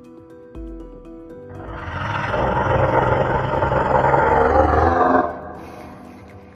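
A loud, drawn-out creature roar sound effect that swells up about a second and a half in and cuts off sharply about a second before the end. It is laid over film underscore music, with a low boom shortly before it.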